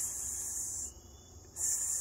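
Insects calling: a loud high-pitched buzz that stops about a second in and starts again near the end, over a faint steady high drone.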